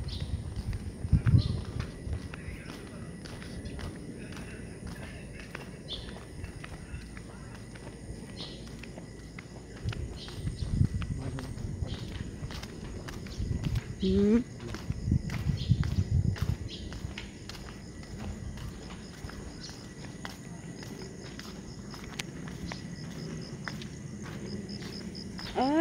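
Footsteps on a paved path at a steady walking pace, with low rumbling bursts from time to time.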